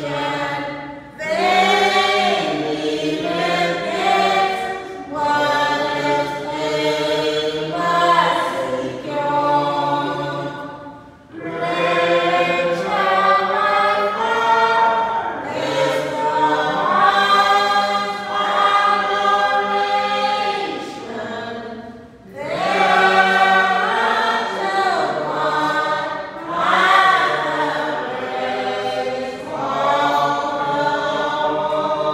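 Choir singing in long phrases, with brief pauses about every ten seconds.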